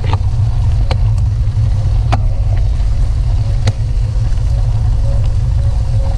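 Loud, steady low rumble of wind buffeting a camera microphone while riding a bicycle, broken by a few sharp clicks at irregular intervals.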